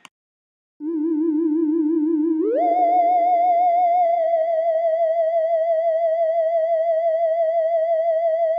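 A single theremin-like electronic tone with a steady wobble in pitch: it comes in about a second in on a low note, slides up to a higher note about a second and a half later, and holds it.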